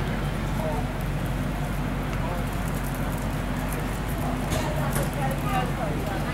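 A steady low engine hum, like a large engine idling, with faint voices of people talking in the background.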